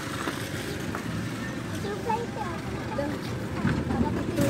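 Steady background noise with faint, brief voices in the middle.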